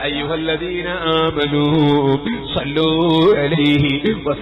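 A man's voice chanting a devotional Arabic salutation in a slow melodic line, holding long notes that waver in pitch.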